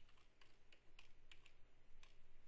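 Faint computer keyboard typing: about seven or eight quick, irregularly spaced key clicks.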